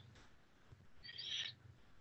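Near silence in a pause in speech, broken by one faint, brief high-pitched sound a little over a second in.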